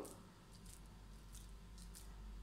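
Near silence, with three faint, brief rustles from a hand squeezing a ball of moist, crumbly semolina laddu mixture.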